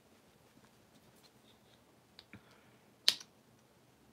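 Quiet room tone broken by two faint ticks, then one sharp click a little after three seconds in.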